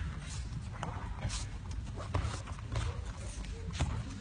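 Bare feet padding and light thuds on the foam mats as attackers move in, scattered a few times a second, over a low murmur of voices in the hall.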